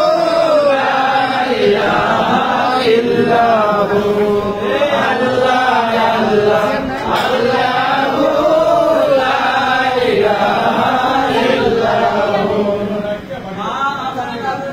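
Voices chanting an Islamic devotional chant in long, melodic rising and falling phrases. The chant eases off near the end.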